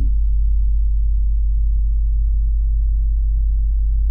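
A loud, steady, deep low drone, a sustained low tone with a faint hum of higher overtones, holding unchanged throughout.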